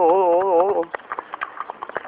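A man's held sung note ends about a second in, leaving a horse's hooves clip-clopping on an asphalt road as it walks.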